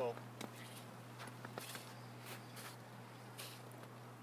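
Footsteps crunching on packed snow, about five uneven steps, over a steady low hum.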